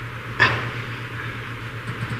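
A pause in the talk: steady low electrical hum under a faint hiss, with one short click about half a second in.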